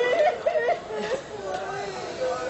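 A man reciting into a microphone with a public-address sound. His voice drops softer just under a second in.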